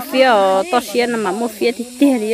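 A woman's voice speaking, with long, drawn-out vowels.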